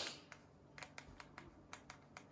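Faint, irregular clicks of buttons being pressed on a Roku remote, several quick clicks in a row.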